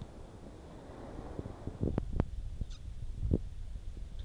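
Low rumbling noise of wind and handling on a camcorder microphone, with two sharp knocks about two seconds in, a louder thud a little past three seconds and a faint high chirp between them.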